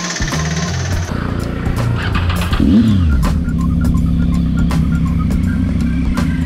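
Motorcycle engine idling steadily, with a brief rev that falls back about two and a half to three seconds in.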